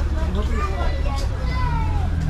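Indistinct chatter of several voices at a busy open-air market stall, over a steady low rumble.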